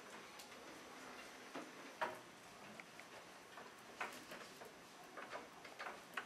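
Quiet room of people writing: scattered, irregular small clicks and taps of pens on paper and desks, with a couple of louder knocks about two and four seconds in.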